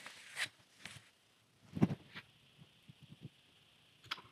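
Quiet handling sounds: a few soft taps and rustles as a tarot card is picked up off a cloth and turned over, the loudest about two seconds in and a run of small ticks after it.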